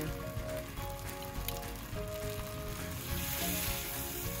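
Steak sizzling in a hot cast iron skillet, the sizzle turning brighter near the end as tongs grip it, under background music with held notes.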